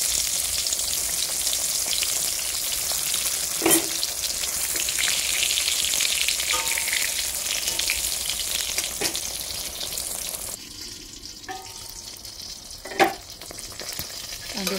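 Spice-coated slices shallow-frying in hot oil in a steel wok: a steady sizzle that turns much quieter about ten seconds in. A few sharp knocks break through, the loudest near the end.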